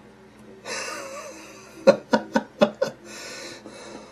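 A man laughing under his breath: an intake of breath, five short laugh pulses about four a second, then an exhale. Faint background music runs underneath.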